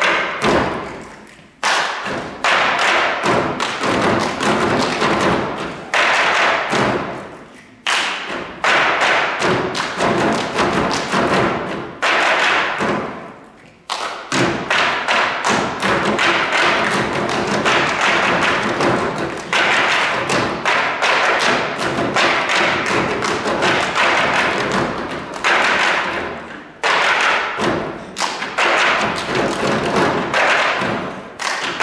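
Table percussion by an ensemble: many players knocking and thudding on a long table in fast rhythmic phrases, broken by a few short pauses.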